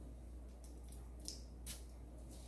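A small perfume bottle's atomizer giving one short spray, a faint brief hiss about three-quarters of the way through, with softer hissy ticks just before it.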